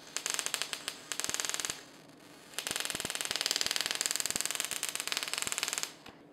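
Teseq NSG438 ESD simulator gun firing 30 kV air discharges from its tip onto a grounded circuit board, a rapid crackle of sparks at about twenty a second. The sparks come in two runs, with a short pause a little under two seconds in.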